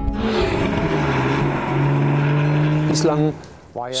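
Porsche 911 flat-six engine running in the car on the move. Its note drops within the first second, as after an upshift, then holds steady. Background music plays under it, and a short snatch of voice comes near the end.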